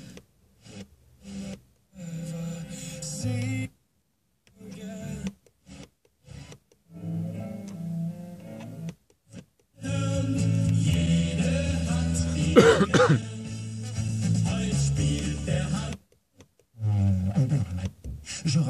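Car FM radio being scanned across the band. Short snatches of broadcast audio are cut off by dead-silent gaps as the tuner mutes between frequencies. About ten seconds in, one station holds, playing music for several seconds before it cuts out again.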